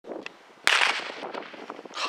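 A single sharp crack of a sprint start signal about two-thirds of a second in, with a short ringing tail, as two sprinters drive out of their starting blocks; a few faint footfalls on the track follow.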